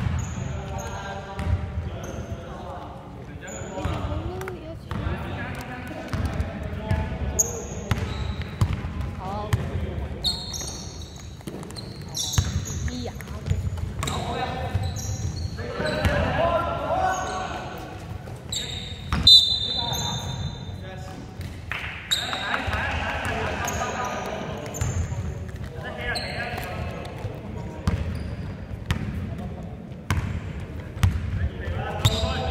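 A basketball being dribbled and bounced on a hardwood gym floor, with short, high sneaker squeaks and players' voices calling out around it in a large sports hall.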